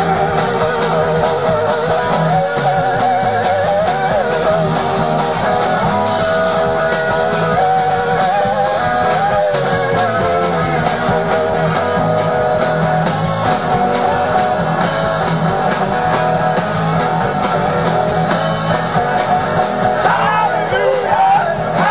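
Live blues-rock band playing an instrumental passage: electric guitar carrying wavering, bending notes over a steady drum beat.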